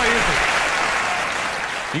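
Studio audience applauding, slowly dying down.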